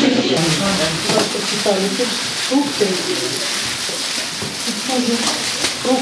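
Plastic carrier bags rustling and crinkling as they are handled, under indistinct chatter of several people.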